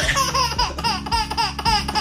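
Baby laughing in a quick run of short, high giggles, about five a second.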